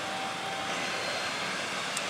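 Steady din of a pachinko parlour, many pachinko and pachislot machines running at once, with a short click near the end.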